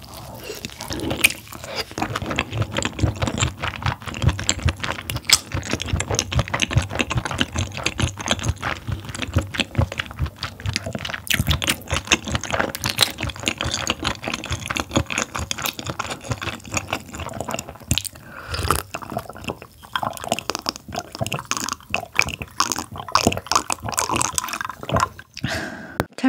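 Close-miked wet chewing of abalone coated in abalone-gut sauce: a steady run of small moist clicks and smacks.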